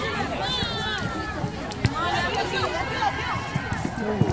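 Indistinct shouts and calls from spectators and players at a soccer match, several voices overlapping, with one sharp knock near the middle.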